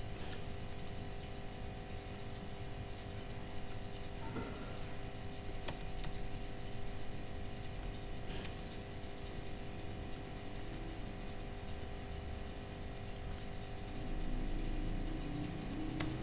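Quiet studio room tone with a steady hum of several fixed tones, broken by a few sharp isolated clicks of laptop keys, seconds apart.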